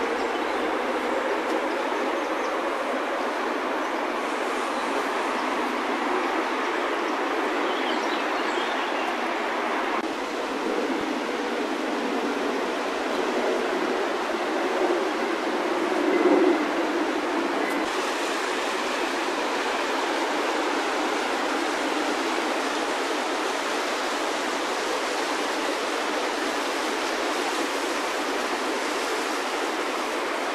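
Steady rushing of a fast-flowing river, with a brief louder swell about halfway through.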